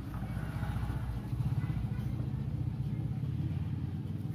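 Low, steady rumble of an engine running, a little louder from about a second in.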